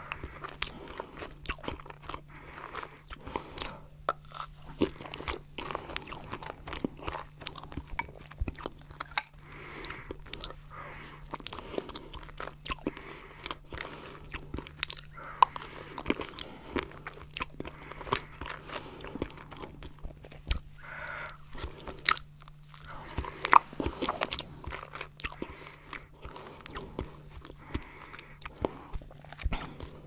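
Close-miked mouth sounds of eating stracciatella pudding, a soft cream mousse with chocolate flakes, from a spoon. There is wet chewing and smacking with many sharp clicks, and the bits of chocolate are slightly crunchy.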